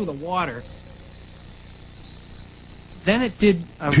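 Crickets trilling in one steady high tone for about two and a half seconds, between bits of a man's speech.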